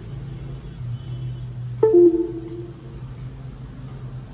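A short computer chime about two seconds in: a higher note falling to a lower one, the Windows sound for a USB device being unplugged. It plays as the iRepair P10 box drops off the computer at the end of its firmware update. Under it runs a steady low hum.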